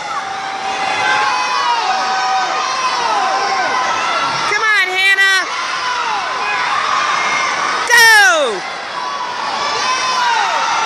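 A poolside crowd of spectators and swimmers cheering and shouting for racers, many voices at once. A burst of louder shouts comes about halfway through. Near the end a single loud yell slides down in pitch, the loudest sound in the stretch.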